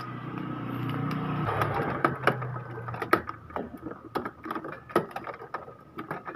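Irregular light clicks and knocks of plastic printhead parts being handled and pulled loose in an Epson L360 carriage, starting about a second and a half in. Before them there is a steady low hum.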